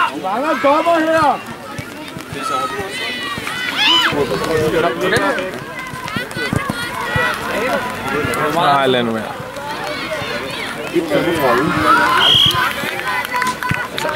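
Several voices shouting and calling out across an outdoor football pitch during play, some of them high-pitched.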